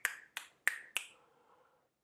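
A man snapping his fingers four times in quick succession, about three snaps a second.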